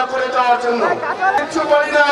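Speech only: a man speaking into microphones.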